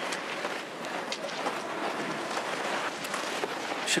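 Cross-country skis and poles on groomed snow as skiers skate past: a steady hiss with a few faint clicks.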